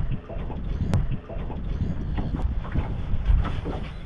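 Wind buffeting the microphone: a low, gusting rumble, with a sharp click about a second in.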